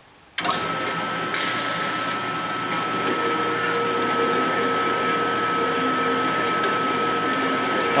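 Horizontal metal-cutting band saw switched on, starting abruptly about a third of a second in, then running steadily with a constant whine as its blade cuts into a solid aluminum billet.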